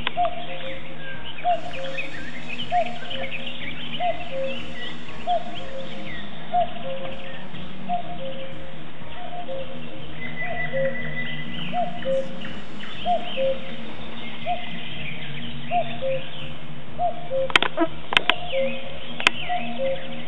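Electronic background music: a slow repeating two-note figure, about one every 1.3 seconds, over a steady low drone. Birds chirp above it, and a few sharp clicks come near the end.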